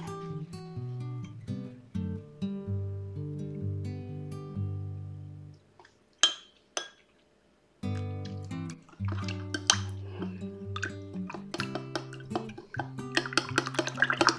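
Acoustic guitar background music that breaks off for about two seconds midway, then resumes. A metal spoon clinks in a glass measuring cup while stirring, with two taps in the pause and frequent clinks near the end.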